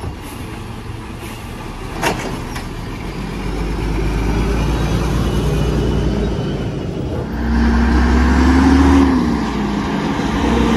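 Mack LE refuse truck's natural-gas engine running as the truck moves up the street. It gets louder about four seconds in and louder again near the end, with a whine that rises and falls. Two sharp clanks, one at the start and one about two seconds in.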